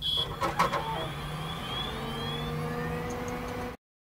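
Channel intro sound effect: it starts suddenly with a few glitchy clicks in the first second, then a steady hum with several rising tones, and cuts off suddenly near the end.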